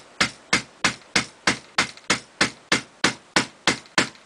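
Rubber mallet striking a soft lead ball seated in the muzzle of an upright Finnish M39 rifle barrel, in sharp, even blows about three a second. The blows are driving the ball into the bore to slug it, swaging it to the bore's diameter.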